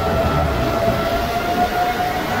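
FPV racing quadcopter's brushless motors and propellers whining in flight, the pitch creeping slowly upward as the throttle rises, over a rushing noise of wind and prop wash.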